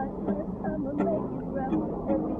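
People talking over acoustic guitar music.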